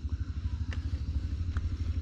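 A small engine running steadily: a low, even rumble with a fast regular throb.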